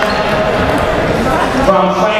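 Amplified voice over a public-address system, echoing in a large gym and too blurred by the echo to make out.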